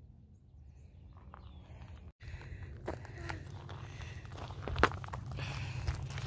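Footsteps on rocky dirt, starting after a brief dropout about two seconds in and getting louder toward the end, with scattered clicks.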